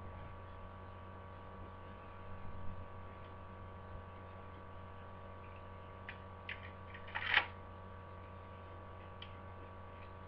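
A few light plastic clicks and a brief rattle of Lego bricks as a Lego toy rifle's magazine is fitted, the loudest about seven and a half seconds in, over a steady electrical hum.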